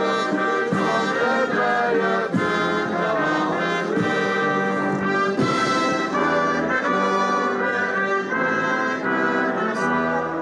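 Military brass band playing, its held notes changing every second or so.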